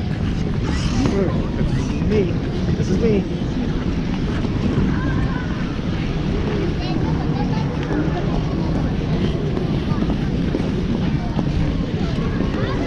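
Steady rumble of wind and movement on a neck-mounted action camera's microphone as the wearer skates, with scattered chatter of other skaters on the rink.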